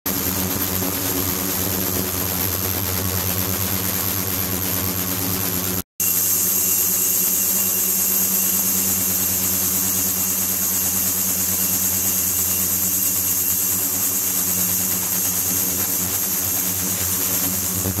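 Ultrasonic cleaning tank running with its liquid-circulation pump: a steady hum with a high-pitched whine above it. The sound cuts out for a moment about six seconds in, then carries on unchanged.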